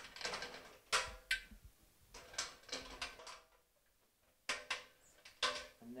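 Clicks and metallic clunks of over-centre toggle latches being unclipped and the turret section of a steel industrial coolant vacuum being handled and lifted off. A brief quiet lull comes near the middle.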